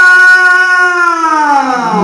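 A single voice singing into a microphone, amplified through a PA: one long held note that slides steadily down in pitch through the second half, with no drums beneath it.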